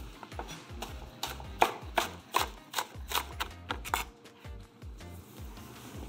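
Chef's knife slicing spring onions on a wooden cutting board: a steady run of sharp chops, about three a second, that stops after about four seconds.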